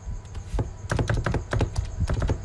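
A rapid run of light plastic clicks from the keys of a handheld calculator being pressed to work out 0.05 × 88, several presses a second, over a low steady hum.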